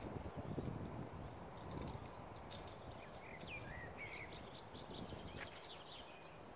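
A small songbird singing in whistled phrases with falling glides, starting about halfway through, over a low rumbling background noise that is strongest in the first two seconds.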